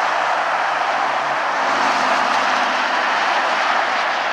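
Steady tyre and engine noise of dense freeway traffic on Interstate 35 moving below, with a faint low engine hum in the middle.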